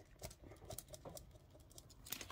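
Faint, scattered light clicks and taps as a small ruler and a FriXion pen are positioned against folded fabric on a cutting mat.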